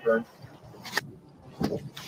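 A gunshot heard faintly through a police car's dash-cam audio: one sharp crack about a second in, followed shortly by a duller knock.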